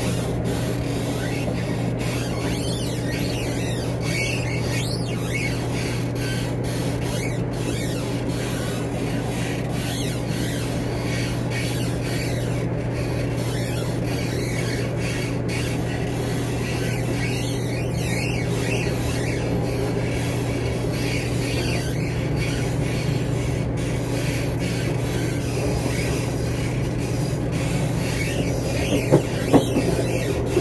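Steady drone inside a Class 170 Turbostar diesel multiple unit, from its underfloor diesel engines and running gear, with faint high squeals now and then and a few sharp clicks near the end.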